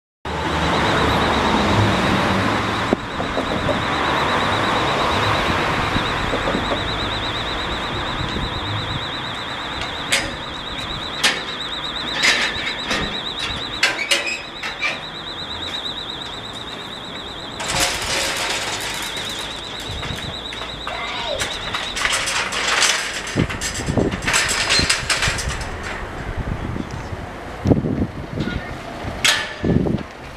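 Level crossing warning alarm sounding a steady, high warbling tone that stops about two-thirds of the way through. Metal road gates are swung shut and clank and latch several times, and a car passes early on.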